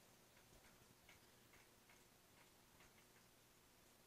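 Near silence: faint room tone with a low hum and about seven faint, irregular ticks.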